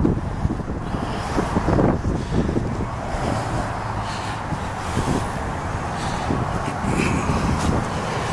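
Wind rumbling on the microphone outdoors: a steady, uneven low rush with no clear tone in it.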